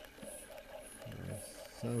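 Medela Pump In Style electric breast pump running at suction setting 3, pulsing faintly in an even rhythm of about two strokes a second.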